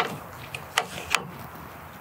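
Sharp metal clicks from a compact tractor's single-point hydraulic connector being handled as it is released from the loader's bracket, three of them in quick succession around the middle.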